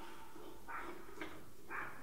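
Three short, faint scrapes about half a second apart as an LED bulb is twisted into a recessed can light's screw socket, its base turning in the threads.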